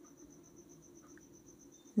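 Faint cricket chirping: a steady, high-pitched pulsing trill of about ten pulses a second, over a faint low hum.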